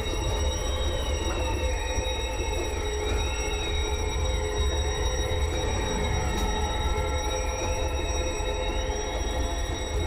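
Dark, eerie music-video soundtrack: a slowly wavering high tone over steady held notes and a heavy, deep rumble.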